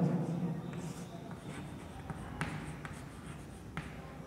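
Chalk writing on a blackboard: faint scratching strokes broken by several short, sharp taps as the chalk strikes the board.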